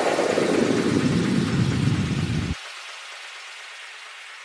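A falling noise sweep at the end of an electronic track: a hiss that slides steadily down in pitch to a low rush, then cuts off sharply about two and a half seconds in, leaving a faint fading hiss.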